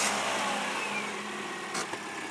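Small car engine idling steadily, a low hum under a rushing noise that is loudest at the start and slowly eases.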